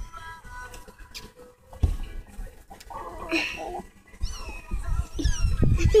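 Young kittens mewing: several short, high-pitched, falling cries in a row in the last two seconds, over rustling and bumping from handling.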